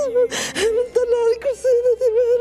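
A woman speaking while weeping, her voice high and wavering, with a sharp gasping sob about half a second in.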